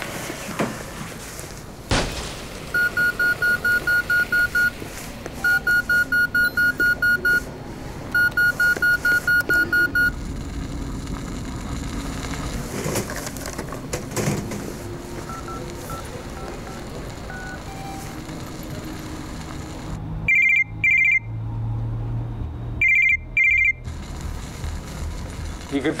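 Electronic telephone ringing: three trilled ring bursts of about two seconds each, then near the end two pairs of shorter, higher-pitched trilled rings, with a sharp knock about two seconds in and film music underneath.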